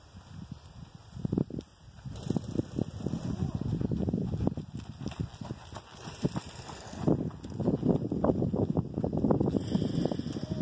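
A pony's hooves trotting on soft arena dirt: uneven low thuds that grow louder and denser in the second half as it comes close.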